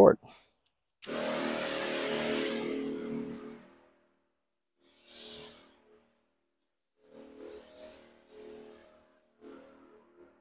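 Chapin battery-powered backpack sprayer spraying liquid from its wand: the pump motor hums under the hiss of the spray. One long spray of about three seconds, then several shorter bursts.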